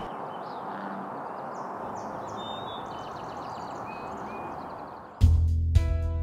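Steady hiss of rain over open wetland, with a few faint bird chirps. About five seconds in, background music with a deep bass and held chords starts, louder than the rain.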